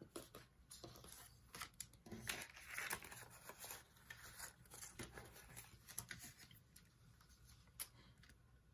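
Faint rustling of paper banknotes and paper envelopes being handled and laid on a table, with scattered soft taps, fading off over the last couple of seconds.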